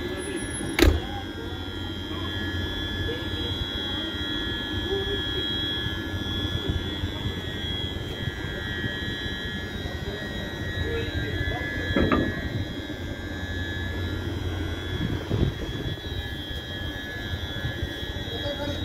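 Electric locomotive E68066 creeping forward while shunting, its electrical equipment giving a steady high whine over a low hum. A sharp knock about a second in, and two fainter knocks later on.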